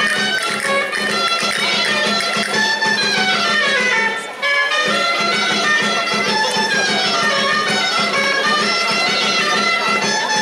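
Traditional folk dance music: a quick running melody over a steady low drone, with a brief dip about four seconds in.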